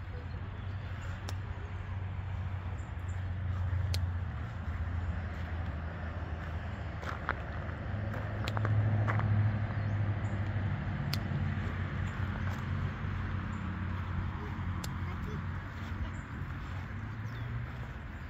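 Steady low outdoor rumble that swells twice, with a few small clicks over it.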